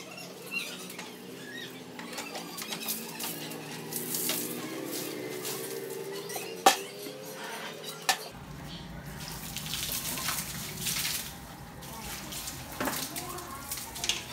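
Water splashing and scrubbing on a wet bicycle, with a few sharp knocks from handling the bike and the bucket, the loudest a little past halfway. A faint wavering pitched sound runs through the first half.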